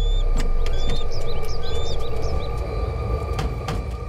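A steady low rumble with short, high bird-like chirps over it and a few sharp clicks.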